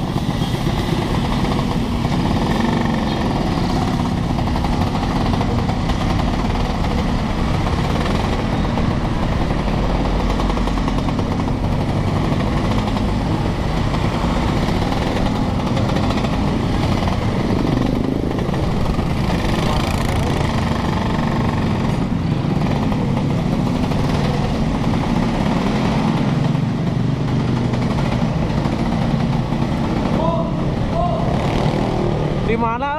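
Two-stroke Vespa scooter engine running steadily under the rider, mixed with the engines of the other motorcycles around it in heavy traffic.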